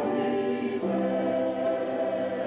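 Mixed church choir of men and women singing sustained chords in harmony, moving to a new chord just under a second in.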